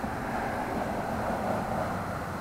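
A steady rushing noise from a distant vehicle, with no speech over it.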